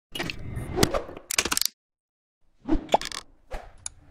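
Intro animation sound effects. A quick run of pops, clicks and cracks lasts about a second and a half, then comes a short silence, then a few more pops and a sharp click shortly before music begins.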